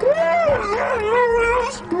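A woman screaming in fright: a high wail that rises and falls, then trails into a shaky, wavering whimper.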